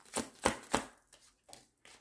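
A tarot deck being shuffled and handled to draw a card: a few crisp slaps and taps of cards, three close together in the first second, then a fainter one.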